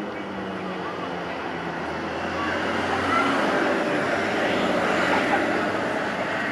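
Outdoor city ambience: a steady rushing noise that swells from about two seconds in and eases a little near the end, over the scattered chatter of a crowd.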